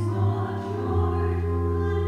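Church organ playing slow, held chords over a sustained bass note that shifts about a second in.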